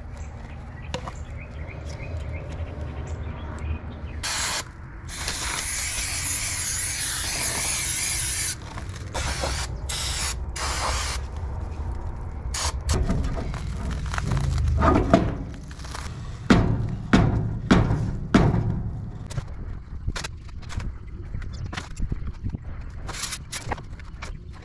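An aerosol spray can hissing in one long burst of about four seconds, then a few short squirts, as it is sprayed onto a trailer's drum brake assembly. After that come irregular metallic knocks and clanks from hand tools working on the wheel hub.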